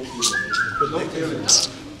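A brief whistle of a few notes, stepping down in pitch and lasting under a second, with faint voices underneath.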